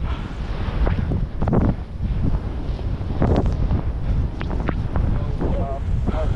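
Wind rushing over an action camera's microphone as a skier descends fast through deep powder, mixed with the hiss of skis and snow spray, and a few sharp knocks along the way.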